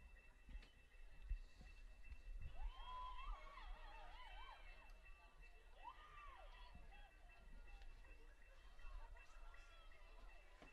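Faint, distant voices shouting and calling out, loudest a few seconds in, over a low steady hum and a faint high whine.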